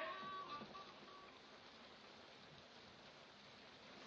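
Blues harmonica notes dying away within the first second, then near silence with the faint hiss of an old film soundtrack.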